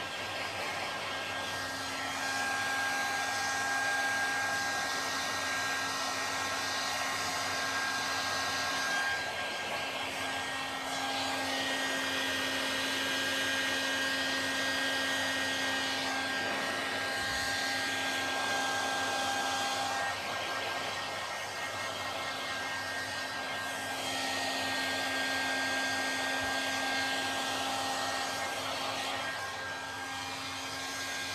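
Handheld hair dryer running continuously, a steady rush of air with a motor whine over it. The whine fades and comes back a couple of times, about nine seconds in and again just past twenty seconds, as the dryer is moved around the head.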